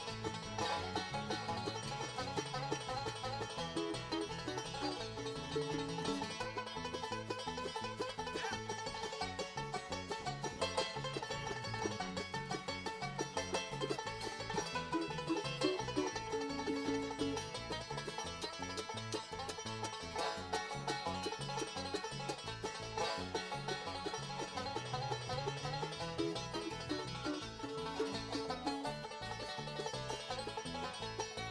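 Resonator banjo picked fast in a live bluegrass instrumental, a dense unbroken stream of notes with lower accompaniment under it.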